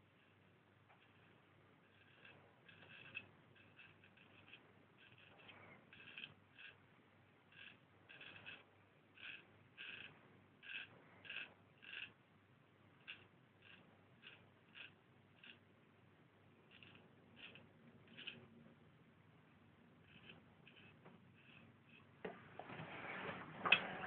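A Marshall Wells Zenith Prince straight razor scraping through lathered stubble in short, quiet strokes, one to two a second. Near the end a louder rush of running water starts.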